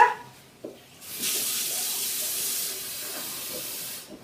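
Cold water running from a kitchen tap into a drinking glass: a steady hiss that starts about a second in and drops slightly in level partway through.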